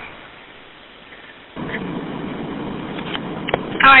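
Faint steady hiss of a telephone line, then a louder, even rush of background noise setting in about one and a half seconds in, with a couple of faint clicks.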